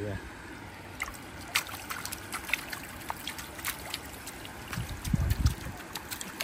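Water trickling and dripping from a shrimp-pond feed tray as it is lifted out of the water, with many small scattered drips and splashes, and a brief low rumble about five seconds in.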